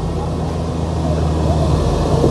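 Diesel engine of a tracked hydraulic excavator running steadily close by, a constant low hum.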